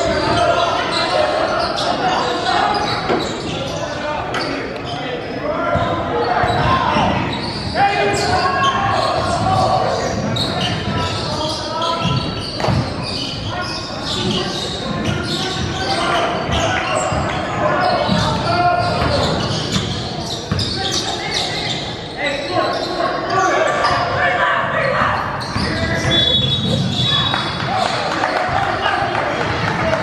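Indistinct voices of players and spectators in a large gym, with a basketball bouncing on the hardwood court as the game goes on.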